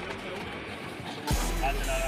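Indistinct voices of footballers on a training pitch, mixed with music. Just past halfway it turns suddenly louder, with a steady low hum underneath.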